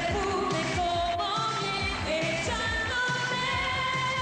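Female pop singer singing a Spanish-language 1980s pop song into a microphone over pop backing music with a steady beat, with sustained and gliding sung notes.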